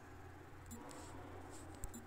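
A few faint taps of a fingertip on a phone's touchscreen keyboard while typing, the clearest one near the end, over a low steady room hum.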